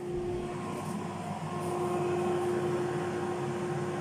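Tefal Easy Fry & Grill air fryer running while it cooks: its fan gives a steady whirring hum with a constant mid-pitched tone.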